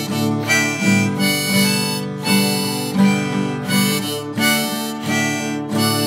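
Harmonica playing a melody over strummed acoustic guitar in an instrumental break of a song, with no singing.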